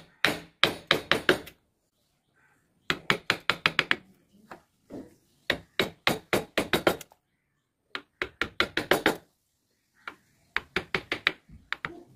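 Flat wood-carving chisel being tapped into the wood in five bursts of rapid sharp knocks, several strikes to each burst with short pauses between.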